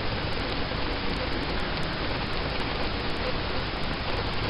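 Steady, even hiss of background noise, with no distinct events in it.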